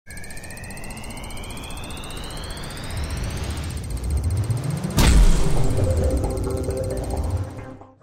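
Intro sting for a title graphic: a rising synth sweep over a low rumble, then a sudden loud impact hit about five seconds in, with deep tones sweeping down after it and ringing out, fading away just before the end.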